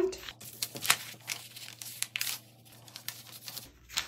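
Paper pattern rustling and crinkling as hands fold a dart closed and press the fold flat, in a few irregular crackles, loudest about a second in.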